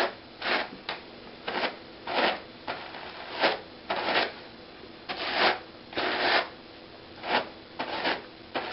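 Hand cards being drawn across each other to card cotton blended with tussah silk. There are about a dozen short brushing strokes, roughly one every half second to a second, and a couple of longer strokes just past the middle.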